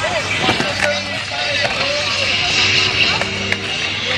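Many voices of a skatepark crowd talking and calling out over one another, with the rolling noise of skateboard wheels on concrete and a few sharp knocks of boards.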